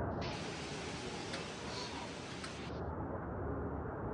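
Hurricane wind and rain outdoors: a steady rushing noise, with a brighter hiss that starts suddenly just after the beginning and stops suddenly after about two and a half seconds.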